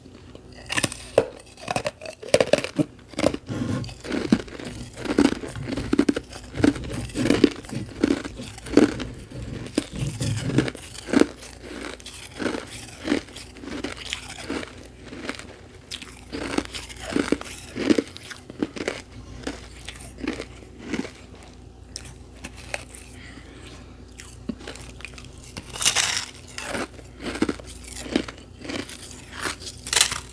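A person chewing and crunching bites of carbonated ice pillow, frozen carbonated drink full of trapped bubbles that makes it crisp and hollow. The chews come about one to two a second, with a run of louder crunches near the end as a fresh bite is taken from the block.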